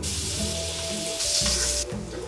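Sweet potato frying in a hot pan, a steady sizzle that grows louder in the second half and then drops off just before the end.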